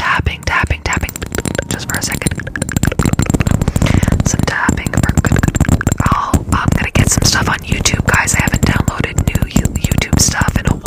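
ASMR tapping close to the microphone, many quick taps a second, with soft whispering over it.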